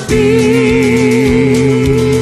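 Karaoke music: a singer holds one long note with a wavering vibrato over a country backing track. It begins right after a brief dip in the music at the very start.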